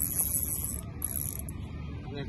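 Spinning reel's drag buzzing in high-pitched runs as a hooked fish pulls line off against the bent rod, cutting out just under a second in, then buzzing again briefly.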